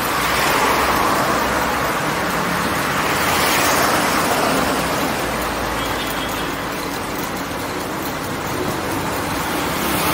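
Steady rushing noise of riding a bicycle along a city road: wind on the handlebar-mounted camera's microphone mixed with road traffic. The hiss swells about a second in and again around three to four seconds in.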